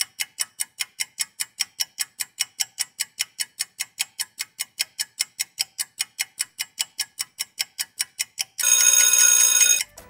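Countdown-timer sound effect: rapid, even clock ticking, about five ticks a second. Near the end a loud, steady alarm sounds for about a second, signalling that the time is up.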